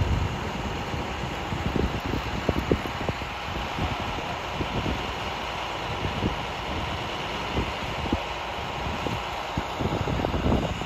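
Steady drone of idling fire apparatus engines with a faint steady hum, broken by frequent low thumps of wind buffeting the microphone.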